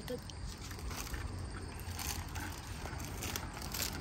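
Eating candy: faint scattered crinkles and crackles of a small candy wrapper being handled, and chewing, over a steady low hum.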